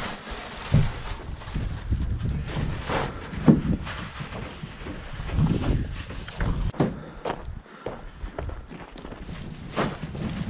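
Irregular steps on gravel, with a few louder knocks scattered through.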